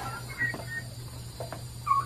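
Faint, short, high bird chirps: a few in the first second and a louder one near the end, over a steady low hum.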